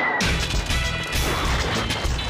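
Cartoon sound effects: a thin whistle falling in pitch ends about a quarter-second in with a heavy crash and a low rumble as the ground cracks open, over jingle music.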